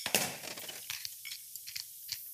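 Fork scraping and stirring against a small stainless steel bowl while honey is worked into a mustard and crème fraîche sauce. A sharp click right at the start, then soft scratchy scraping through the first second, dying down to faint rustling.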